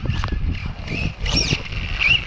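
Electric RC truck's drivetrain squeaking in a few short, high chirps, the clearest about two-thirds of the way through, because the pinion gear has backed out. Wind rumbles on the microphone underneath.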